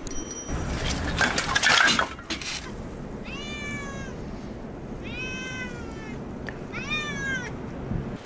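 A domestic tabby cat meows three times, each meow about a second long and rising then falling in pitch. Before the meows, in the first couple of seconds, there is a louder, rough clatter.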